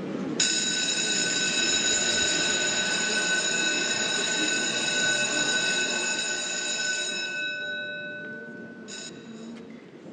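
Electric school bell ringing continuously for about seven seconds, starting abruptly and then fading out, with a brief second ring near the end.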